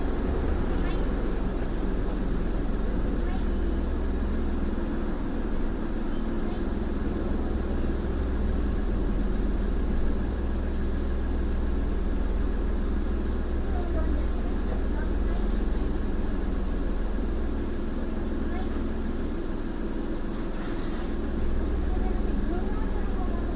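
Car engine idling while the car stands still, heard from inside the cabin as a steady low hum.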